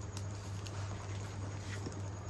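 Cardboard parcel wrapped in packing tape being handled and lifted on a workbench, giving a few faint, light knocks, over a steady low hum.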